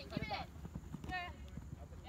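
Faint, distant shouting voices: two short calls, one just after the start and one about a second in, over soft low thuds.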